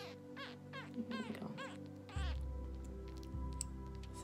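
Background music with held tones, a deep bass note coming in about halfway. Over it in the first half comes a quick run of short, high squeaks, each falling in pitch, two or three a second, from a nursing baby squirrel feeding from a syringe.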